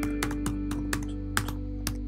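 Typing on a computer keyboard, about four keystrokes a second, over background guitar music.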